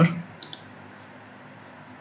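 Two quick clicks of computer keyboard keys about half a second in, as a value is typed into a field, over a faint steady hum.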